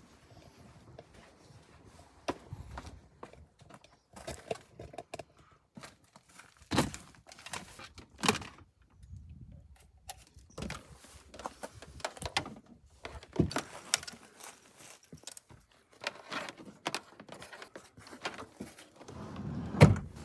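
Handling noises inside a car: a string of irregular knocks, clicks and thunks as cables and seat trim are moved about, the loudest knocks about seven, eight and thirteen seconds in.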